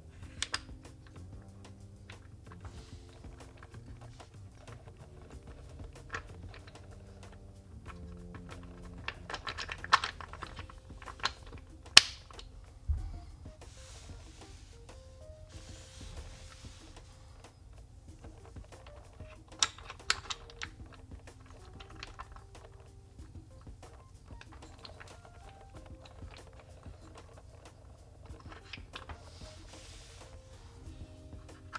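Wooden puzzle blocks clicking and knocking against one another and the wooden tray as pieces are lifted and set down. The clicks come in clusters about ten seconds in, around twenty seconds and near the end, over soft background music.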